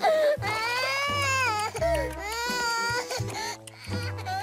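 A cartoon character's high-pitched wailing cry, in two long drawn-out wails that each slide down at the end, over background music.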